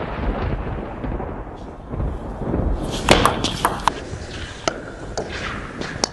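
A deep rumbling boom, like a cinematic logo sting, slowly fading away. Scattered sharp clicks and ticks join it from about three seconds in.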